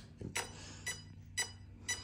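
Faint, sharp metallic ticks, about two a second, each with a brief ring.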